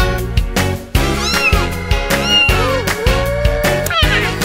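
Instrumental children's song with a steady beat, and a cartoon cat meowing a few times over it, the last meow longer.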